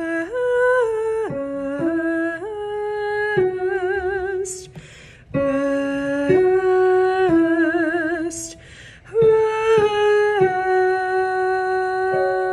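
A woman's solo alto voice singing a slow wordless line in a small room, stepping between held notes with vibrato at the ends of phrases. There are two short pauses for breath, about four and eight seconds in.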